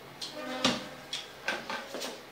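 A few sharp clicks and knocks of small objects being handled, the loudest about two-thirds of a second in, with a short hum of voice among them.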